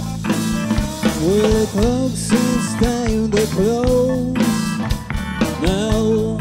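Live rock band playing a bluesy number on electric guitar, bass and drum kit. A melody line enters about a second in, its notes bending upward in pitch, over steady drum hits.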